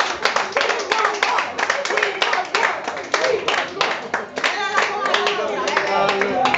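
A small audience clapping, with voices talking over the applause.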